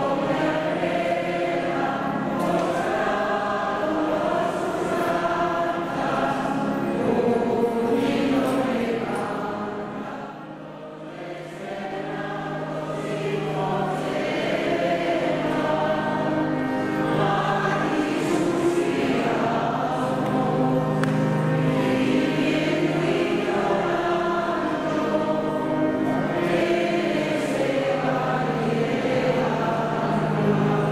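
Group of voices singing a religious hymn in a large church, held sung notes throughout. The singing thins out briefly about ten seconds in, then resumes at full strength.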